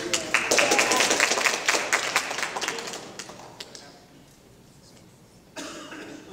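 Audience applauding in a large hall, a burst of clapping that dies away after about three seconds.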